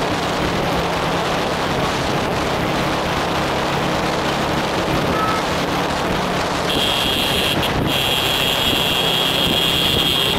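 Small 50cc motorcycle engine running steadily at speed under heavy wind noise on the microphone. From about two-thirds of the way in, a shrill steady high tone sounds, breaks off briefly, then continues to the end.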